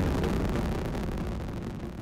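Space Shuttle launch noise from its rocket engines: a low, rushing noise that fades away over the two seconds as the vehicle climbs.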